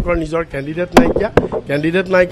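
A man speaking, with two sharp clicks about a second in, under half a second apart.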